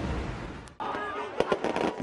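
Music fading out, then a crowd with fireworks going off. About a second in comes a quick string of sharp firework cracks and pops over the crowd noise.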